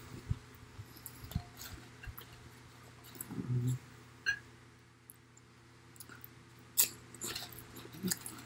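Close-up mouth sounds of a man chewing crunchy fried pork rinds, with scattered crisp crunches and clicks, the loudest near the end. A short low hum comes from him about three and a half seconds in.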